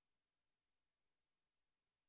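Near silence: faint steady hiss of a muted or idle microphone feed.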